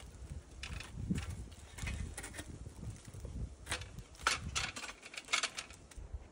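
Tree Lounge climbing tree stand being worked up a tree trunk: irregular clicks, knocks and scrapes of the metal frame against the bark, busiest between about four and five and a half seconds in.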